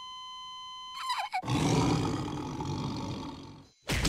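A steady held tone for about a second, then a loud cartoon roar that fades away over about two seconds.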